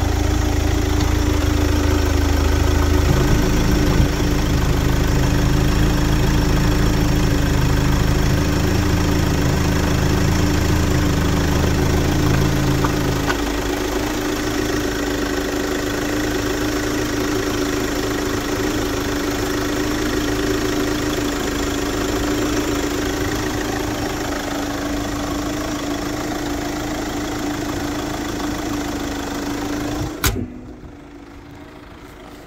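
Daewoo Winstorm's VCDi 16-valve diesel engine idling steadily with the bonnet open. A steady hum runs through it, and the deepest part of the rumble drops away about 13 seconds in.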